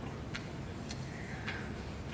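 Quiet room tone with three faint ticks about half a second apart.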